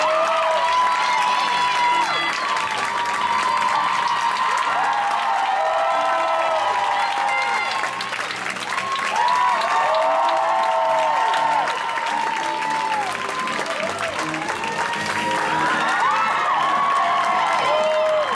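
Audience applauding steadily throughout while music plays for the curtain call.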